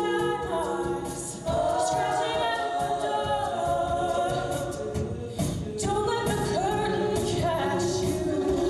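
All-female a cappella group singing live through microphones, several voices together in harmony with no instruments, with brief breaks between phrases about a second and a half and five and a half seconds in.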